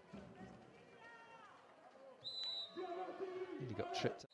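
Quiet sports-hall sound with faint voices. About two seconds in, a referee's whistle gives one short, high blast, followed by a voice calling out briefly.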